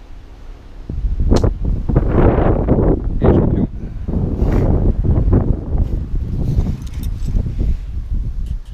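Wind buffeting the camera's microphone in gusts, coming in about a second in, with rustling from the hand-held camera.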